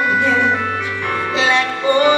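Live gospel song: a woman singing a slow, gliding vocal line over held accompaniment chords.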